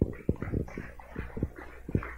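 Handheld microphone being handled as it is passed from one man to another: a string of irregular low thumps and rustles.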